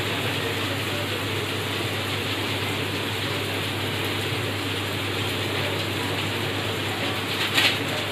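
Onions, beans and tomato frying in hot oil in a kadai: a steady crackling sizzle over a low hum, with a short sharp click near the end.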